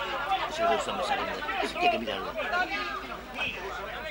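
Overlapping chatter of several spectators' voices talking at once, with a faint steady low hum underneath.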